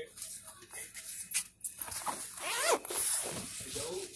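A zipper pulled in one quick rasp that rises in pitch about two and a half seconds in, after a couple of sharp handling clicks, with a sigh at the start.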